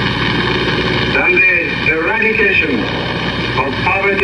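Speech from an old archival recording, heard under a steady hiss and hum, with no break in the talk.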